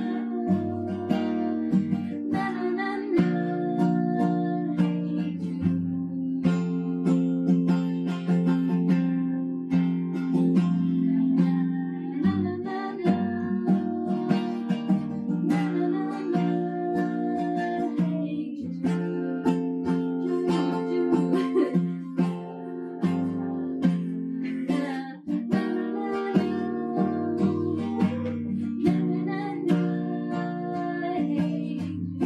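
Steel-string Epiphone acoustic guitar, capoed, strummed in a steady rhythm of chords, with a voice singing along.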